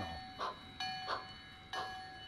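A steam locomotive's bell clanging in an even rhythm, about once a second, each strike ringing on, over the faint sound of a train.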